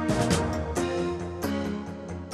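Soundtrack music: sustained chords with several sharp struck accents.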